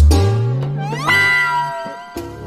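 Dramatic sound-effect music sting: a loud low note that swells and glides upward, then a higher wailing note that slides up about a second in and holds, both fading out near the end.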